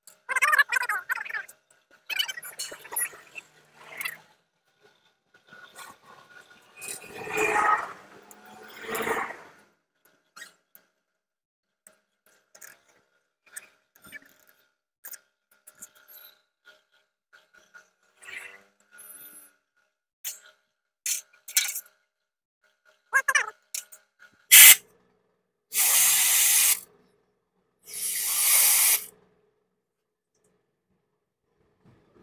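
Clicks, scrapes and rubbing as the plastic fuel pump assembly of a Honda SP 125 is worked apart by hand. Near the end a short sharp burst is followed by two blasts of compressed air from an air blow gun, each about a second long: the pump is being blown clean of the water and dirt that got into it from the fuel.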